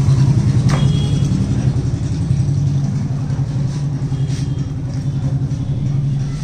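A steady low mechanical hum, engine- or motor-like, runs throughout, with one brief click a little under a second in.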